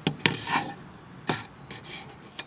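A few short, separate scrapes and rubs on a plastic nursery can, as its cut-off bottom section is worked loose.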